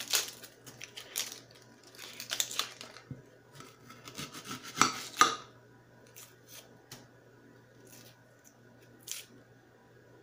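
Dry, papery onion skin being peeled and torn off by hand, with crackly rustles and small taps of the onion and skin pieces on a ceramic plate. The crackling is busiest in the first few seconds and again around five seconds in, then thins out to occasional clicks.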